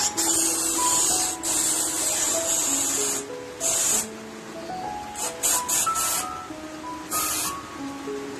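Gas hissing through a filling nozzle into a latex balloon in several abrupt bursts as the valve is opened and closed and the balloon swells, over background music.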